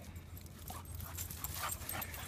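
Small dogs playing close by in grass: faint, scattered short scuffling and breathing sounds, with no barking.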